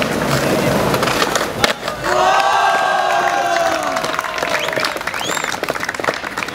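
Skateboard wheels rolling on concrete with clattering noise, and a sharp clack of the board just before two seconds in. Then a long drawn-out shout of cheering from onlookers, held for about three seconds and falling slightly in pitch.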